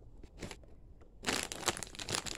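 Lay's Classic potato chip bag crinkling as a hand presses and squeezes it: a short rustle just under half a second in, then dense continuous crinkling from a little past a second in.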